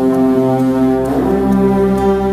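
Background music of held low tones that change to a new chord about halfway through.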